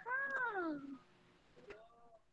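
A cat meowing: one long meow that rises slightly and then falls in pitch, with a shorter call near the end.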